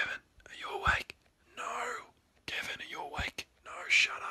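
A person whispering in short phrases, with brief silences between them.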